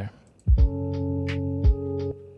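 Playback of a lo-fi hip-hop beat: a held keyboard chord over programmed drums, starting about half a second in. It has two quick double kick-drum hits about a second apart and lighter hi-hat or snare ticks.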